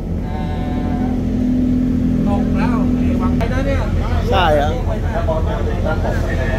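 Steady low diesel engine rumble from a train standing at the platform, with a steady held tone for a couple of seconds near the start, under short bits of talk.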